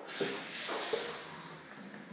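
Water from a pull-down spring kitchen faucet hissing as it sprays into the sink. It starts suddenly and fades away over about two seconds.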